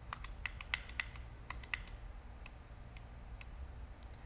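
Faint keyboard typing: a quick run of clicks in the first two seconds, then a few scattered clicks, over a low steady room hum.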